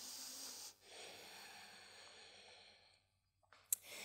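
A woman breathing faintly, two long breaths, the second fading away about two and a half seconds in, then a small click near the end.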